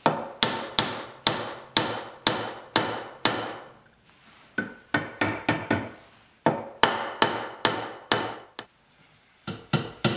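Hammer driving a chisel to trim the protruding wedged leg tenons flush with a wooden stool seat. The sharp strikes come about two a second, each with a short ring, in runs broken by brief pauses.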